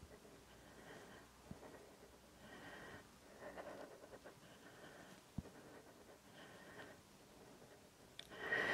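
Near silence, with faint breaths about every second or so from a woman straining to hold a side plank while moving a light dumbbell, and two faint clicks.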